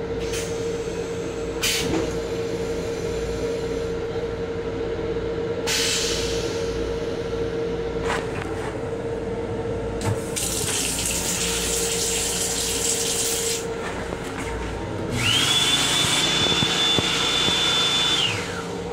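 Automatic sink faucet in an LIRR M7 railcar restroom spraying water for a few seconds about ten seconds in, then the hand dryer starting with a quick rising whine and running at a steady high pitch near the end, over the train's steady hum.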